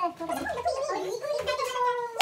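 High-pitched voices, a child's or a woman's, with a wobbling, wavering pitch and no clear words, ending in one drawn-out note that slides downward.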